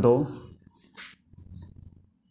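Marker squeaking on a whiteboard in short, irregular high-pitched squeaks as a number and letters are written, with one sharp click about a second in.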